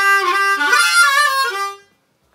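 Diatonic harmonica playing a short phrase of bent notes. The pitch sags down and comes back up, giving the 'wah-wah' sound of bending. It stops shortly before the end.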